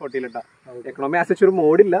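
Only speech: a man talking, with a short pause about half a second in.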